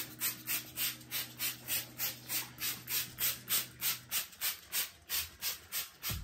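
Trigger spray bottle of Clorox cleaner with bleach being squeezed rapidly and repeatedly, a quick hiss about four times a second as the shower walls are sprayed down.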